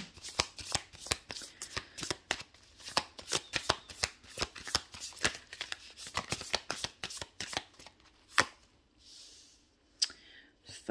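A deck of tarot cards being shuffled by hand: a quick, uneven run of card snaps and flicks for about eight seconds, ending in one sharper snap, after which the shuffling stops.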